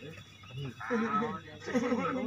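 A man's voice, talking in short phrases with a brief pause at the start.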